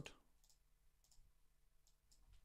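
Near silence, broken by about three faint computer mouse clicks.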